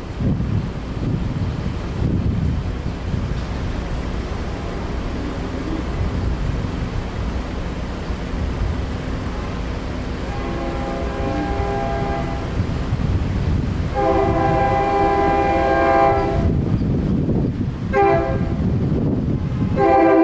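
Horn of an approaching SEPTA electric commuter train sounding for the grade crossing. It gives several separate chord blasts that get louder as the train nears: a faint long one about halfway through, a long louder one, a short one, and another long one starting right at the end.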